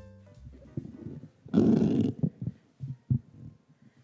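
Bumps and rubbing from a podium microphone being handled and adjusted, heard through the hall's sound system as irregular low thumps, with one louder scraping rustle about a second and a half in. The tail of a piano music interlude fades out at the very start.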